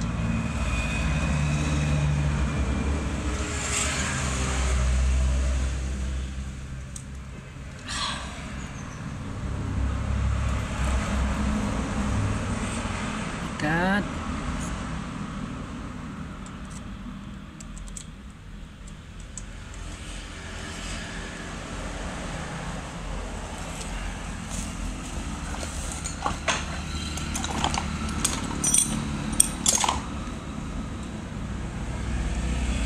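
Low, uneven background rumble, with light clicks and taps of a plastic AVR module and wiring being handled against the generator's stator housing near the end.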